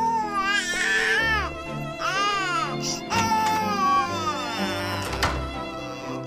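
Infant crying: three cries in a row, the last the longest, over background music.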